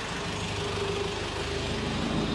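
A motor vehicle's engine idling: a steady low rumble with an even pulse and a faint steady tone above it.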